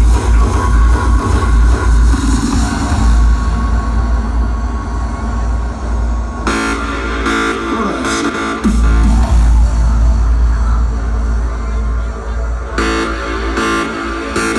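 Hardstyle DJ set played loud over a festival sound system, with heavy bass throughout. A brighter synth section comes in about six and a half seconds in, and again near the end.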